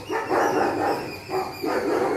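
Chippiparai puppies barking at play, several barks in quick succession, one of them drawn out near the start.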